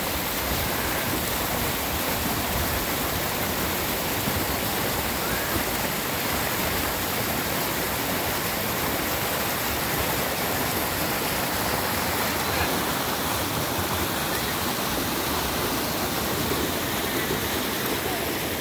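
Creek water rushing over a rocky cascade: a steady, even rush of whitewater.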